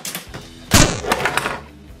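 A large hard-plastic Giant Eggman Robot toy knocked over, hitting the tabletop with a single sudden crash about three-quarters of a second in.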